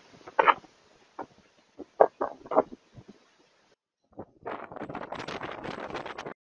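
Storm wind gusting against a security camera's microphone in sharp, irregular bursts. After a brief cutout about four seconds in, it becomes a dense, continuous rush of wind.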